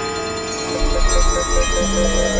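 Layered electronic music of steady synthesizer drones, with a rapidly pulsing, ringtone-like tone starting a little over half a second in and a heavy low bass entering just after.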